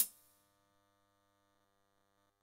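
A single sharp click right at the start, dying away within about a quarter second, over a faint steady hum made of several held tones.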